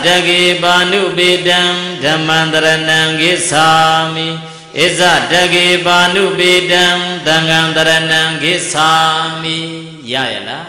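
A Buddhist monk's single voice chanting Pali verses through a microphone, long phrases held on a nearly level pitch, with short breaths about five and nine seconds in.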